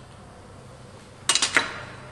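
A quick cluster of three or four sharp clinks with a short ring about a second and a half in: small lab vessels knocking together as a cuvette is filled with a coloured solution. A faint steady low hum runs underneath.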